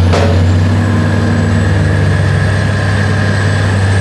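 Freeway traffic with a heavy vehicle engine running steadily close by, giving a loud low hum. A brief hiss comes right at the start.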